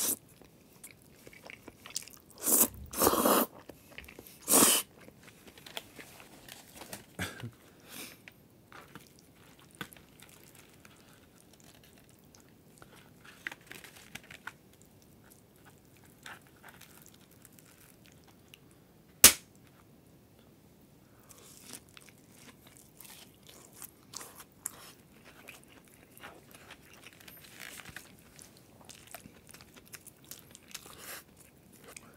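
Close-miked eating of carbonara pasta with chopsticks: soft wet chewing throughout, with loud noodle slurps about two to five seconds in and one sharp click near the middle.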